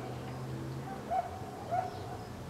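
An animal's short, pitched calls, one about a second in and another near the end, over a low steady hum.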